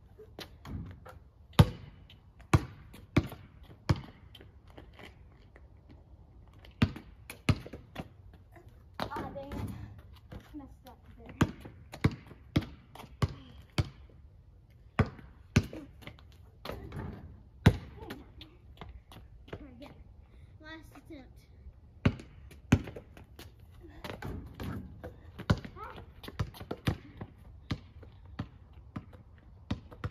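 Basketball bouncing on an asphalt driveway: a string of sharp bounces in runs of about one to two a second, with a lull of a few seconds past the middle.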